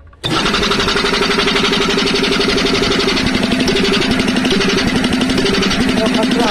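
A 10 HP belt-driven reciprocating air compressor, its cylinder heads freshly serviced, starts abruptly about a quarter second in. It then runs with a fast, even mechanical clatter over a steady hum.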